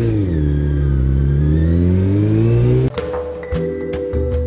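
Honda CBR600 inline-four engine heard from the saddle: the revs drop for about a second and then climb steadily as the bike pulls away. About three seconds in it cuts off abruptly to music with a beat.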